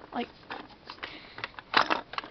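Small plastic toy pieces handled and pressed together, giving light scattered clicks and a louder clatter of knocks near the end.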